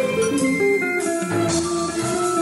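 Instrumental music: an electric guitar, an Ibanez Jem 77, plays a melodic line of stepping notes over keyboard-synthesised backing with bass.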